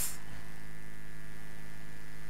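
Steady electrical mains hum with a light hiss from the microphone and amplification chain, unchanging throughout.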